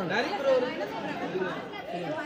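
Several people talking at once: overlapping voices of a crowded group.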